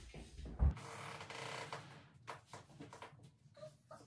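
A tall wardrobe being shifted by hand across a hardwood floor: a knock about half a second in, then a scraping slide and a few light knocks.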